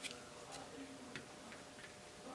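Drips of acrylic paint falling from a tilted canvas and ticking onto an aluminium foil pan: a few faint, irregularly spaced ticks.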